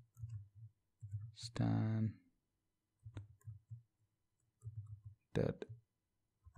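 Typing on a computer keyboard in several short runs of dull taps, with pauses between them.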